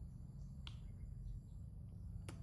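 A single short, sharp kiss smack from a person's lips about two-thirds of a second in, over a faint low background hum.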